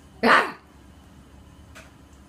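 A single sudden, loud shout, about a quarter of a second long, made to startle a baby and make him jump.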